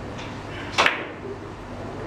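A sharp double click of a carom billiard shot, with the cue tip striking the ball and balls colliding, about a second in.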